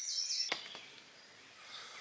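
Songbird singing a run of short, high whistled notes, cut off by a sharp click about half a second in, followed by faint woodland background with a few faint bird notes.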